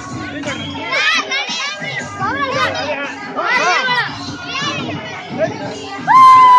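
Crowd of schoolchildren shouting and calling out over one another, with many high rising-and-falling cries over a steady murmur of voices.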